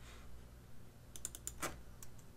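A short, quick run of faint keystrokes on a computer keyboard, a little past a second in, typing a value into a field.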